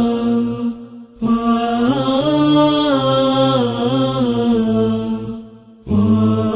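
Unaccompanied melodic chanting by a single voice, long held notes sliding between pitches, with a short breath-break about a second in and another near the end.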